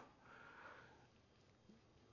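Near silence: room tone, with a faint intake of breath in the first second.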